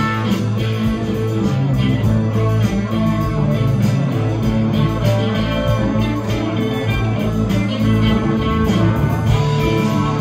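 Live blues band playing an up-tempo twelve-bar blues: electric guitars over drums and bass with a steady beat, the horn section behind them.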